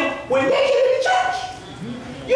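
A man's raised preaching voice in a large hall, with a drawn-out vocalised phrase about half a second in that trails off over the second half.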